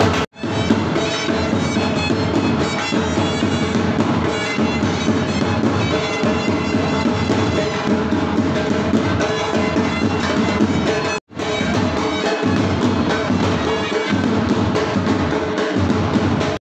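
A pipe band playing: bagpipes over steady marching drums. The music drops out for an instant twice, once at the start and once about eleven seconds in.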